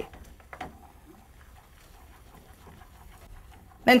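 Faint, steady sizzle of scallions, garlic and curry powder sautéing in melted butter in a pan.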